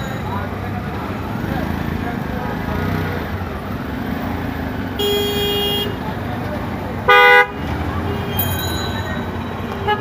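Busy street traffic in a jam, with a steady hubbub of engines and people's voices, and vehicle horns honking. A horn sounds for about a second around the middle, a louder short blast follows soon after, and shorter honks come near the end.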